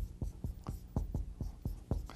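Marker writing on a board: a run of short, quick scratching strokes and taps, about five a second, irregularly spaced.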